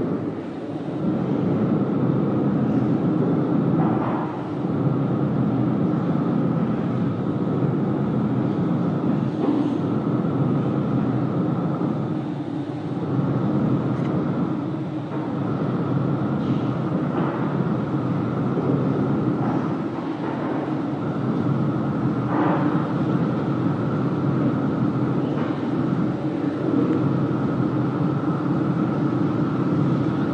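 Steady, loud, low electronic drone, an ambient soundscape played through a video installation's speakers, with a thinner steady hum above it and a few faint swells.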